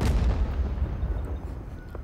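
Deep boom of an explosion, hitting suddenly at the start and fading into a low rumble over about two seconds.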